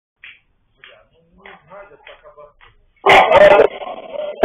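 A few faint, short dog barks, spaced about half a second apart. About three seconds in, a loud recorded passenger announcement starts suddenly over the trolleybus's loudspeaker.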